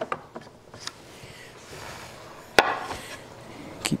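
Wood-on-wood knocks and a sliding scrape as a board and a flat MDF spacer are set on a wooden workbench and bench dogs are fitted. There are a few light knocks, a scrape in the middle, and one sharp knock a little past halfway.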